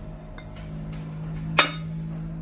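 A single sharp clink about one and a half seconds in, as an eggshell knocks against a glazed ceramic bowl, over soft background music.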